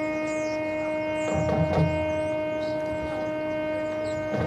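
Marching band holding one long sustained note, steady in pitch. A low rumble swells briefly about a second and a half in.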